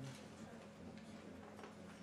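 Near silence: quiet room tone with a steady low hum and a few faint clicks.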